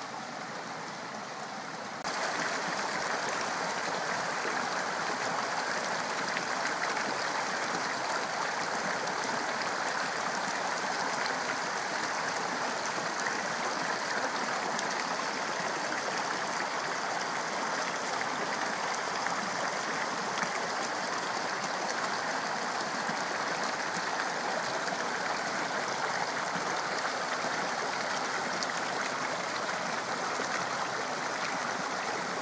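Small mountain creek running over rocks, a steady rush of flowing water with trickling from a little cascade. It gets louder about two seconds in and then stays even.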